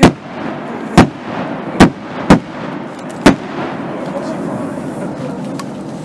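Aerial firework shells bursting: five sharp bangs in the first three and a half seconds, the last two closer together, then a steady background of crowd murmur.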